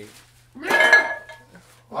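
A short clatter of hard objects about half a second in, with a ringing clink that dies away over the next second.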